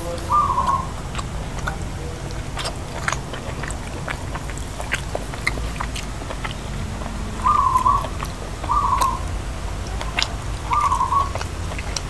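Close-up eating sounds: chewing with small clicks of the mouth and fingers on food. A bird calls four times in short single notes, once near the start and three times in the last third; these calls are the loudest sounds.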